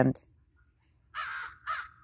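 A crow cawing twice: a harsh caw about a second in, then a shorter one just after.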